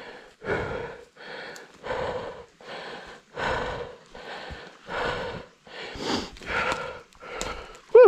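A man breathing hard and fast, about two breaths a second, winded from exertion, with a short voiced groan right at the end.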